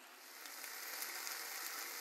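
Chicken breast pieces frying in a small pan on high heat, a faint, steady sizzle that starts about half a second in.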